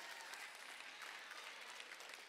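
Faint applause from a large audience, an even patter with no voice over it.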